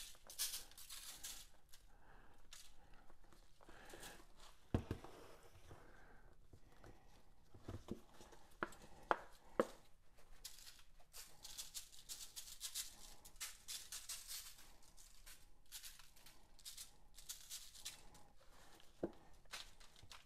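Seasoning rub shaken from plastic shaker bottles onto a rack of ribs: faint, repeated sprinkling rattles, with a few sharp taps and clicks in the middle.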